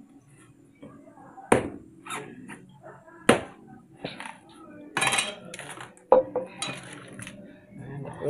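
A bolo knife chopping into a young coconut's husk and shell: several sharp hits, about a second and a half in, again after three seconds, around five and around six seconds, as the nut is split open.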